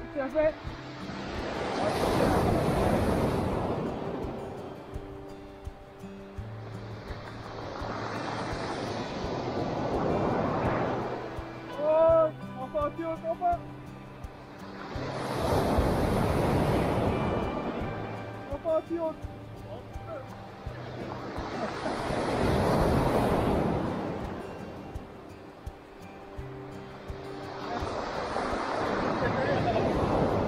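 Waves breaking on a pebble beach and washing up the shore, five surges about every six or seven seconds. Background music plays underneath.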